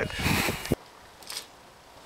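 Rustling handling noise from a camcorder being carried, cut off abruptly less than a second in. It is followed by faint outdoor background with a single small tick.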